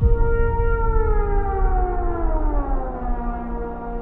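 Film sound-design call of a sauropod dinosaur: one long call that starts suddenly and slides down in pitch over about three seconds, then holds at a lower pitch, over a deep rumble.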